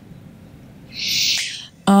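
Quiet lecture-hall room tone, broken about a second in by a short hiss close to the lectern microphone. Just before the end a woman's voice begins a held 'a...' hesitation.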